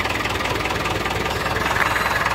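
David Brown 1390 tractor's three-cylinder diesel engine idling steadily, ticking over nicely.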